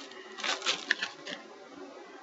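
Paper rustling as a small wrapped item is handled: a few short scrapes, with one sharp click about a second in.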